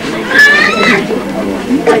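Crowd of people talking, with a brief high-pitched wavering cry about half a second in.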